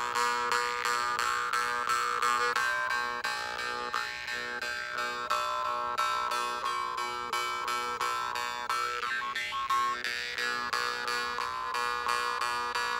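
Two jew's harps (vargans) tuned to the same low note B, around 121 Hz, played together as a steady drone. They are plucked evenly several times a second, while the overtones above the drone shift up and down.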